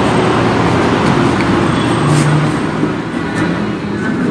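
Steady city street traffic noise: passing cars running with a low hum.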